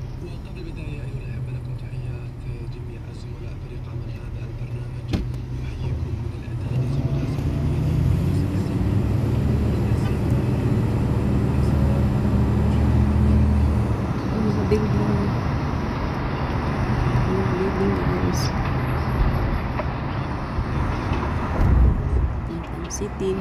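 Car engine and road noise heard from inside the cabin: a low, steady rumble that grows louder from about seven seconds in as the car moves through traffic.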